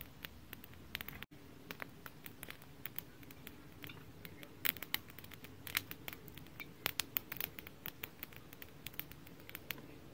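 Wood campfire crackling, with irregular sharp pops over a low, steady rush of flame.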